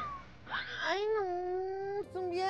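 A cartoonish descending whistle glide from the scene transition fades out at the start. About half a second in, a character voice rises into a long, drawn-out wail held on one pitch, a sad moan of loneliness.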